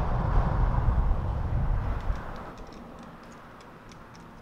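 Low outdoor rumble, like traffic on the street, fading away over the first two seconds or so, then faint light ticks near the end.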